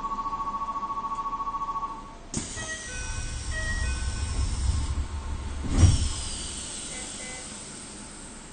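Electronic station departure bell ringing as a fast-pulsing two-tone buzz that cuts off about two seconds in. A click and a few short chime tones follow, then a low rumble and a loud thump near six seconds, typical of the train's doors closing before departure, with a fading hiss after.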